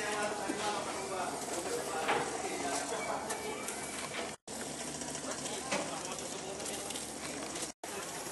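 Indistinct chatter and calls of several men working close by, over busy outdoor noise with scattered knocks. The sound cuts out completely for a moment twice.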